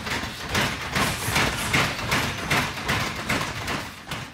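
Boxing gloves striking focus pads and bags in a gym, a fast run of punches about three or four a second, tailing off near the end.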